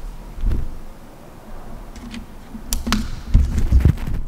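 Handheld camera handling noise: irregular low thumps and bumps, with a few sharp clicks about three seconds in.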